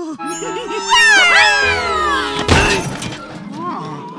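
Cartoon soundtrack: music and a descending, sliding falling effect, ending in a sharp crash of an impact about two and a half seconds in as the character lands on the ground, with cartoon vocal grunts around it.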